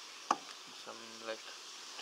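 Steady high hiss of insects calling in the surrounding vegetation, with a single sharp click about a quarter of a second in and a brief low hum of a man's voice around the middle.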